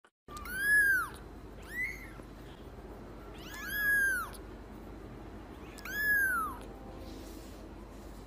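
Kitten mewing four times: high, thin calls that rise and then fall in pitch, the second one short, spread over about six seconds.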